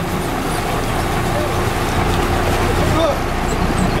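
Boat's engine running steadily, with water rushing past the hull.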